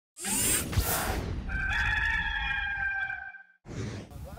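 Intro sound effect: a rushing whoosh, then one long rooster crow, the Gamecocks mascot call.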